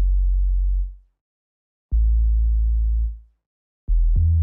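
Two deep synthesized bass notes, each held a little over a second and then fading out, with silence between them, about two seconds apart.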